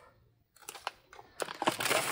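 Plastic food containers crinkling and clicking as they are picked up and handled, a run of sharp, uneven crackles starting about half a second in.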